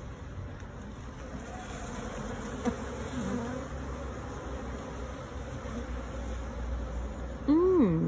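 A mass of honeybees buzzing steadily around an opened hive with frames full of bees.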